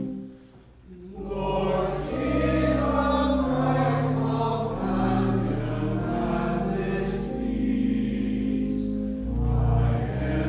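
A church organ's held chord ends. After about a second's pause, voices begin singing a hymn with organ accompaniment, the low organ notes held under the melody.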